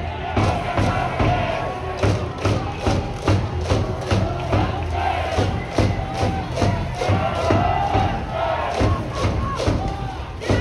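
A school cheering section in the stands chanting in unison to a steady drum beat, about two to three beats a second, the usual organized cheering at a Japanese high school baseball game.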